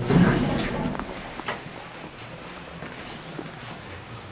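Handling noise and shuffling steps in a small elevator cab: a noisy burst in the first second, then a few light clicks and taps over a faint background.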